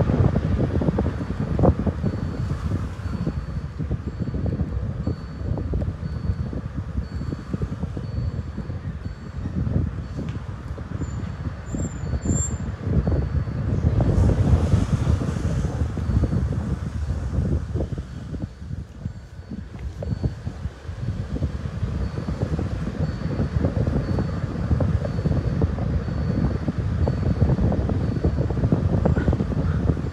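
Wind buffeting a phone microphone in a moving car, a gusty low rumble mixed with road and engine noise, easing off briefly about two-thirds of the way in. A couple of short high chirps sound about halfway through.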